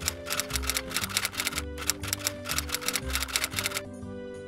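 Typewriter key-clatter sound effect, a rapid run of clicks that stops shortly before the end, over background music.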